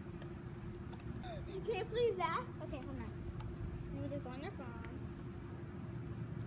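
Short vocal sounds from a person's voice, twice, over a steady low hum and background rumble.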